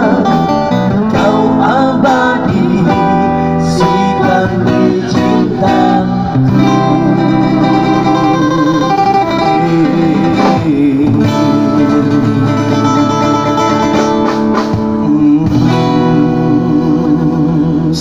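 Live amplified busking music: vocalists singing into microphones over plucked guitar accompaniment, with long held notes sung with vibrato in the second half.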